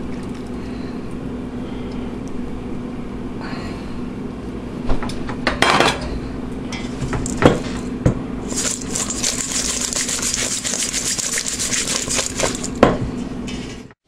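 A saucepan of sauce is poured over crumb-coated cauliflower in a stainless steel bowl, with a few sharp knocks of metal on metal. From about halfway through, the pieces are tossed in the metal bowl, a dense rattling, scraping rustle lasting several seconds, over a steady low hum.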